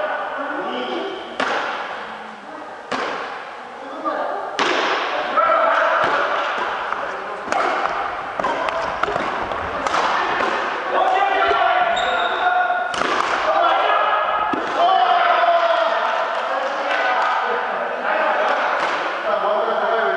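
Badminton rackets striking the shuttlecock in sharp cracks every one to three seconds during a doubles rally, ringing on in the echo of a large gymnasium hall, with players' voices in between.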